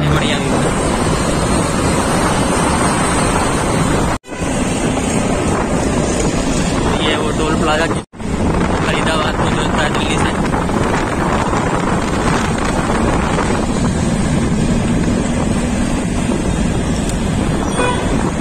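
Wind rushing over the microphone of a phone filming from a moving motorbike, mixed with the engine and road and traffic noise. The sound cuts out for an instant twice, about four and eight seconds in.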